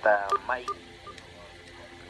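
A man says a single word. Then a handheld network radio gives two short high beeps and a few faint clicks as its top knob is handled, followed by quiet room tone.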